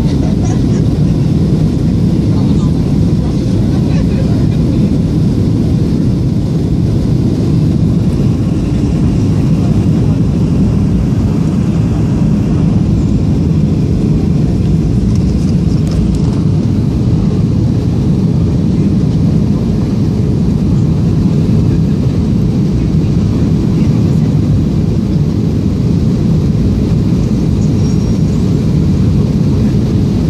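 Steady cabin noise of a Boeing 737 on approach, heard inside the cabin at a window seat over the wing: its CFM56 turbofan engines and the airflow over the airframe with the flaps extended. The noise is low and even throughout, with no rises or breaks.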